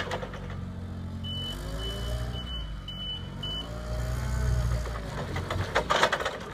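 Linde H18 forklift's engine running, its pitch rising and falling as the truck manoeuvres. A high warning beeper sounds about five times between one and four seconds in, typical of a reversing alarm, with brief clattering near the start and end.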